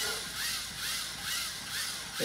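Hand-cranked Lego motor driving a second Lego motor that spins a paper platform under a felt-tip marker: a rhythmic squeaky scratching that repeats about three times a second.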